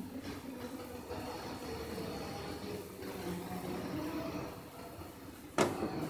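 Curry gravy boiling in a nonstick kadhai over a high gas flame: a low, steady bubbling, with one short knock near the end.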